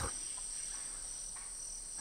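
Steady high-pitched chorus of rainforest insects, an unbroken whine with a fainter, lower tone beneath it.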